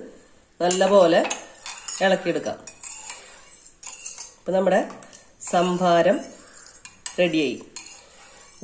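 Metal spoon stirring buttermilk in a glass bowl, scraping against the glass in about five separate strokes, each a short squeaky, pitched scrape.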